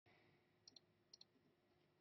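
Faint computer mouse clicks over near silence: two quick double clicks about half a second apart.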